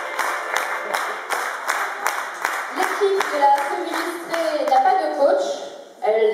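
Audience clapping together in time, about three claps a second, dying away about halfway through as voices take over.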